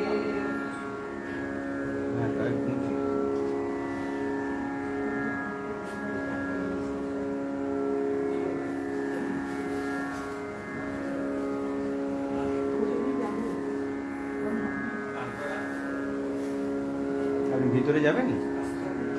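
A steady musical drone of several held notes, with faint voices murmuring under it now and then.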